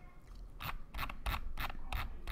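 Computer mouse scroll wheel clicking: a quick run of about seven light ticks, roughly five a second, starting about half a second in as a web page is scrolled.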